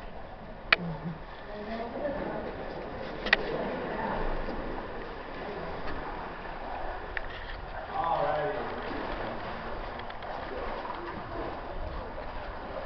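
Indistinct chatter of other people, with two sharp knocks, one just under a second in and another a little after three seconds.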